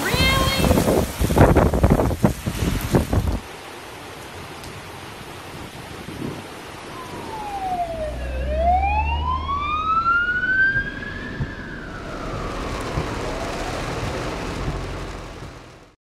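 Heavy rain on wet pavement with loud knocks and rough noise for the first few seconds. After a cut, a fire engine's siren wails over rain and traffic rumble, heard from inside a car: one slow sweep that falls, then rises high and falls again in the second half.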